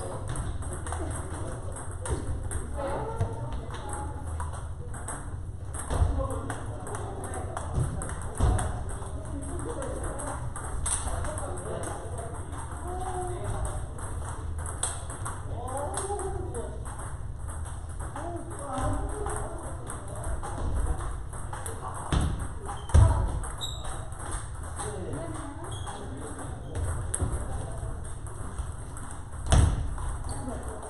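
Celluloid-style plastic table tennis balls clicking off rubber bats and the table tops in rallies, in an irregular run of sharp ticks, over the steady murmur of people talking.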